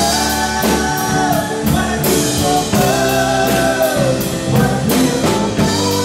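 Live rock band playing: drum kit keeping a steady beat under electric guitars, bass and keyboard, with a woman's voice singing two long held notes.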